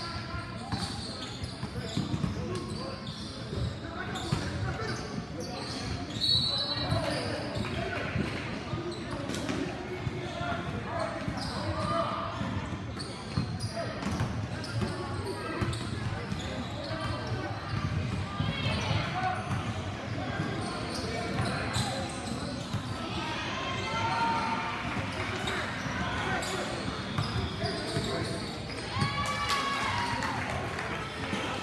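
Basketball game in a large gym: a ball bouncing on the court in scattered knocks, under indistinct calling voices of players and spectators.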